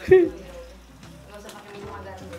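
Dry spaghetti dropped into a pan of boiling water: a short clatter as the strands land, then the water bubbling faintly.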